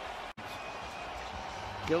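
Basketball broadcast court ambience: a steady, even background of arena and court noise with no commentary, broken by a momentary dropout about a third of a second in where the footage is edited.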